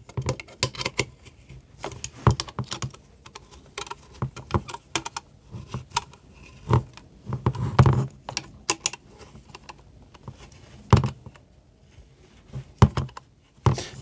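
A steel Allen key clicking and scraping in socket-head bolts as they are tightened on an aluminium plate with plastic clamps. The clicks and taps come irregularly, with a few louder knocks in the second half.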